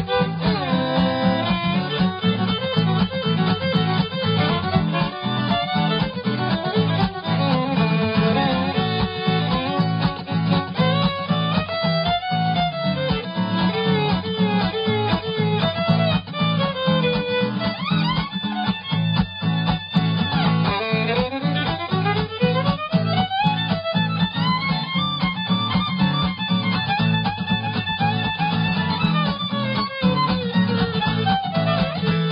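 Fiddle playing a bluegrass fiddle tune with guitar accompaniment. The fiddle makes several long slides up and down in pitch, while the guitar keeps a steady rhythm underneath.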